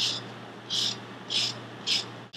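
Lemon rind being grated on a long, narrow rasp zester: four short scraping strokes, a little over half a second apart.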